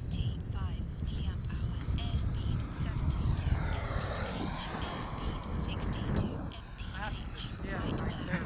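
Twin Jetfan 110 electric ducted fans of a 1:8 scale Skymaster F-18 RC jet whining as it flies low past, swelling to loudest about four seconds in and then fading. Wind rumble on the microphone underneath.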